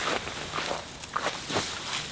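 Knees and hands shuffling on dry grass and rustling the nylon fabric of a bivy sack, in a few soft, irregular scuffs.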